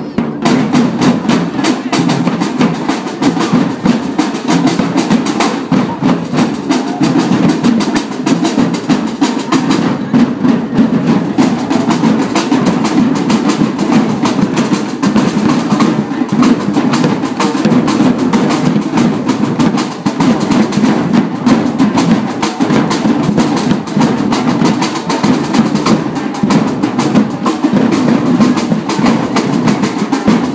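A drum troupe playing together: slung snare drums and large bass drums beating out a dense, continuous rhythm.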